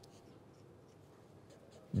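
Faint scratching of a felt-tip marker drawing on paper, barely above room tone.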